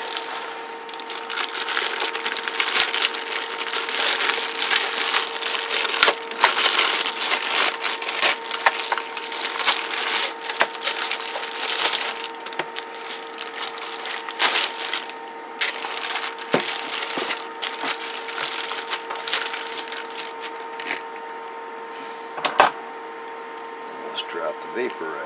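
Styrofoam packing and plastic wrap being handled as a CB radio is unpacked: dense crackling and rustling for roughly the first fifteen seconds, then sparser, with one sharp knock near the end.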